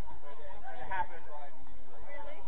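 Football players' voices calling out on the pitch, with one louder shout about a second in.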